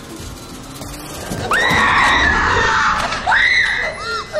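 A woman screaming in terror: a long high-pitched scream starting about a second and a half in, then a second, shorter scream near the end.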